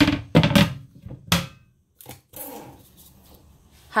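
Hard, clattery knocks and scraping as things on a stone-look kitchen countertop and sink are handled, in the first second and a half. After that comes a faint, steady background noise.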